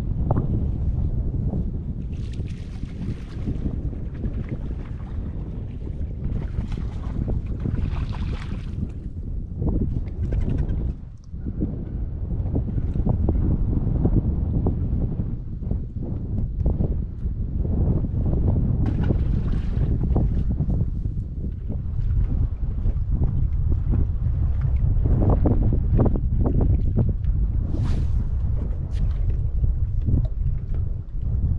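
Wind buffeting the microphone, a steady low rumble that gusts up and down, with a brief lull about eleven seconds in.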